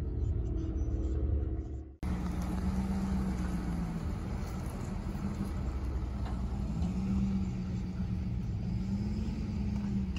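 Low, steady rumble of a car engine running, heard from inside the car's cabin, with a faint hum that rises and falls slightly in pitch. The sound breaks off abruptly about two seconds in, then picks up again.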